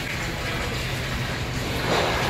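Steady low mechanical hum with an even rushing noise over it.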